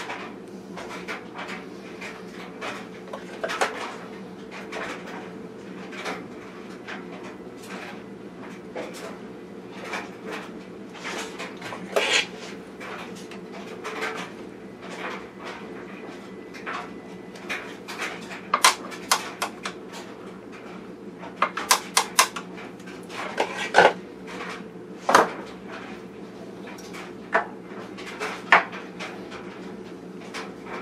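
Screwdriver and small steel parts clicking, tapping and clinking against the underside of a 1914 Singer 127 sewing machine as its bottom mechanism is put back together. There is a string of light clicks, with quick rattling runs of clicks a little past halfway and a few sharper knocks. A steady low hum runs underneath.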